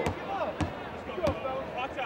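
A basketball being bounced three times on a hardwood court, evenly spaced about two-thirds of a second apart: a shooter's dribbles before a free throw. Faint arena crowd and voices underneath.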